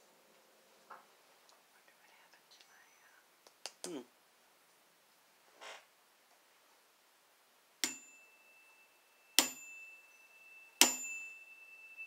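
A small solar plexus bell struck three times, about a second and a half apart, each strike leaving a clear high ring that carries on through the next. A few faint handling clicks come before the first strike.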